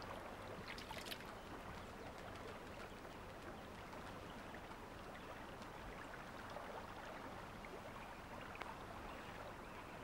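Faint water sounds: a brief splash about a second in as a white-tailed eagle's feet strike the shallows, then a low, steady wash of water noise.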